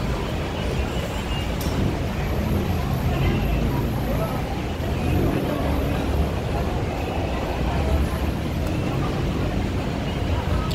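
Steady low background rumble with faint, indistinct voices.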